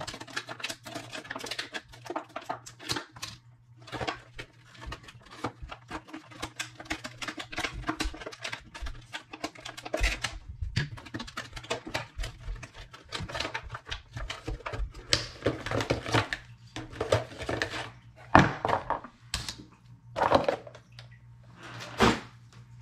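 Hands opening the packaging of a new spinning reel and handling its parts: a quick, uneven run of small clicks, taps and cardboard-and-plastic rustles, with a few louder knocks near the end. A faint low hum runs underneath.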